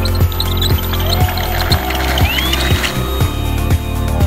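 Background music with a steady beat, about two beats a second, over sustained low notes, with a rising tone sweeping up around the middle.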